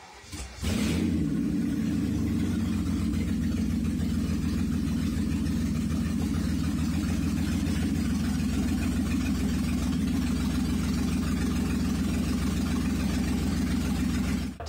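BMW V12 engine swapped into an E38 740i, coming in sharply under a second in and then running steadily: a test run confirming the swapped engine runs in this car after the body harness was changed to match the engine harness.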